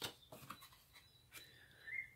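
Near silence with a few faint clicks and taps of playing-card stock being handled, as one card is set down and the next picked up. A faint, brief rising tone comes near the end.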